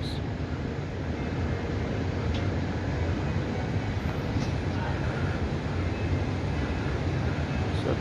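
Steady city street noise: road traffic running past as an even rumble and hiss with no distinct events.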